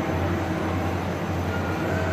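N scale model freight train rolling past on its track, a steady running noise from its many cars, over a steady low hum in a large hall.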